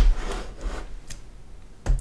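Handling noise from an open metal desktop computer case being turned around on a wooden desk: a sharp click at the start, a few faint taps, and another knock just before the end.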